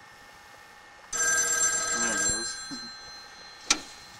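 Payphone bell ringing once: a sudden ring of several steady high tones starting about a second in, ringing loudly for about a second and a half and then fading away. A single sharp click follows near the end.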